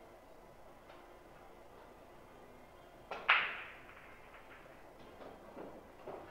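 A pool shot: a light tap, then a loud, sharp clack of pool balls colliding about three seconds in that rings off briefly. A few fainter knocks follow near the end.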